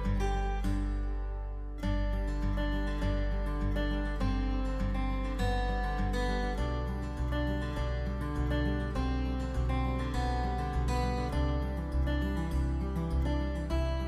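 Background music: a tune of quick plucked notes over a steady bass.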